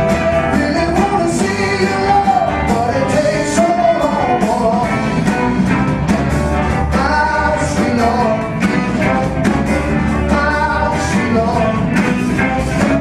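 Live rock band playing a gospel number: electric guitar and keyboards over bass and drums, with a steady beat and a melodic line that glides between notes.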